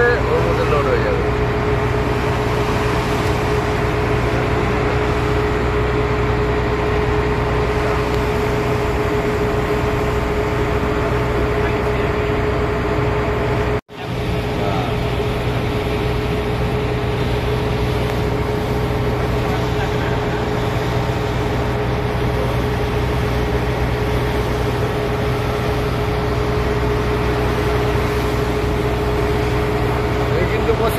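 A small fishing boat's engine running at a steady drone with a constant hum as the boat moves along. The sound drops out abruptly for a split second about halfway through.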